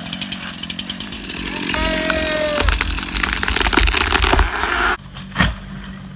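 Two-stroke gas chainsaw running, getting louder from about two seconds in as it is revved into the cut, then cutting off abruptly about five seconds in, followed by a single sharp knock.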